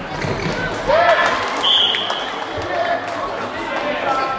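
Echoing shouts of players and spectators in a sports hall, with one short, high referee's whistle blast about a second and a half in. A football is kicked and bounces on the hall floor with sharp thuds.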